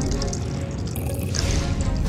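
Juice pouring in a stream into a glass mug and splashing, over background music.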